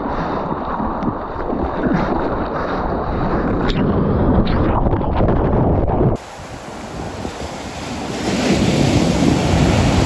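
Seawater sloshing and splashing around a camera held at the surface, with wind on the microphone. About six seconds in, the sound cuts to a different recording in which a shorebreak wave breaks onto the beach, the surf growing louder near the end.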